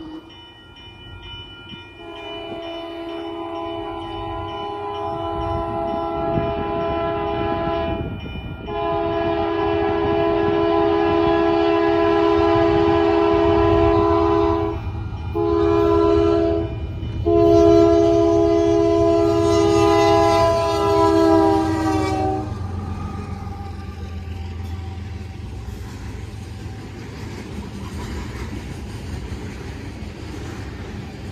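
Union Pacific freight locomotive's horn sounding the grade-crossing signal: two long blasts, a short one and a final long one. It grows louder as the train nears and drops in pitch at the end of the last blast as the locomotive passes. Then comes the steady rumble of freight cars rolling through the crossing.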